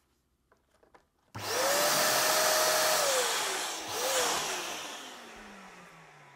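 Electric balloon inflator's blower motor switching on about a second in and running with a steady hum while a latex balloon fills, then winding down, its pitch and level falling away over the last few seconds, with a brief blip of speed partway through.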